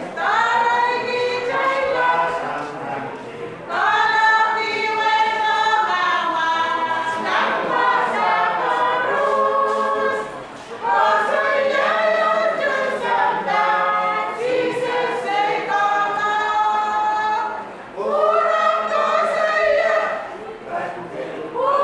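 A small church choir singing together without instruments. It sings in long phrases with short breaks between them, about every seven seconds.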